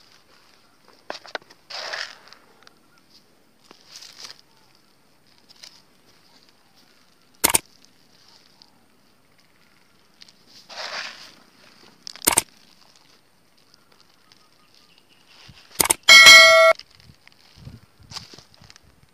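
Soft scattered rustling as soil and potato plants are worked by hand, broken by two sharp clicks. Near the end comes a short, loud ringing tone, the loudest sound.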